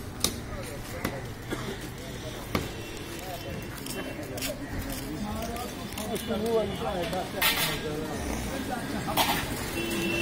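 Sharp single knocks of a butcher's knife chopping meat on a wooden block, a second or more apart, in the first half. Near the end come two short rushing noises.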